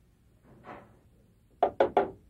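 A soft scrape in a copper saucepan, then three quick knocks of the spatula against the pan near the end.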